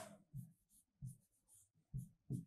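A pen writing on a board: three short, faint strokes.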